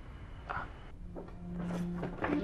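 Soft rustling of clothing and bedding as a man shifts to get up from a bed. A low, held music note comes in about a second in.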